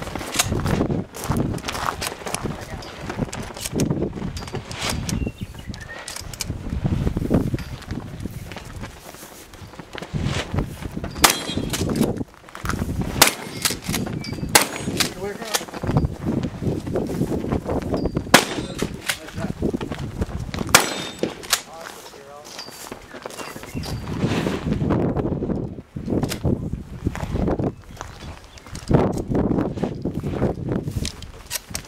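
Gunshots on a 3-gun match stage: single shots spaced a second to a few seconds apart, mostly in the middle stretch, over a steady low rumble.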